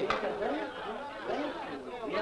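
Indistinct chatter of voices talking, with no clear words.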